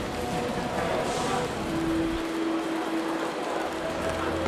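Airport terminal background hubbub: indistinct voices over steady noise, with a short steady hum in the middle.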